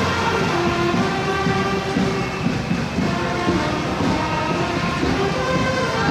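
Temple procession band playing: a loud melody of held, pitched wind-instrument notes that step from one pitch to the next, over dense percussion and street noise.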